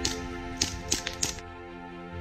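KWA Kriss Vector gas blowback airsoft gun firing a quick, uneven string of sharp shots, each a short clack, over background music; the shots stop about a second and a half in.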